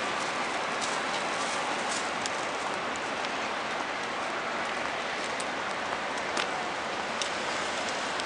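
Steady, even hiss of outdoor city street noise, with a few faint clicks scattered through it.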